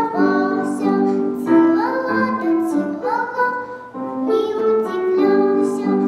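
A young girl singing a children's song with piano accompaniment.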